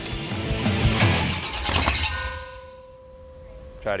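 383 stroker small-block V8 on an engine run stand being cranked by its starter for about two seconds without firing, then cutting off; the failure to start is down to a bad starter. A steady musical tone follows.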